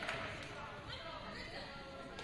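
Indistinct crowd and player chatter echoing in a gymnasium, with a sharp thump of a volleyball bouncing on the hardwood court at the start.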